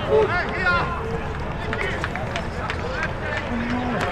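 Voices around an outdoor soccer match: scattered shouts and calls with sideline chatter, including a short held call near the end, over a steady low outdoor rumble.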